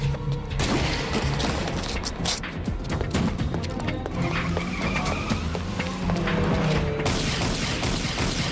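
Tense action-film score music, with sharp knocks and impacts mixed in. Near the end a louder rush of noise sets in.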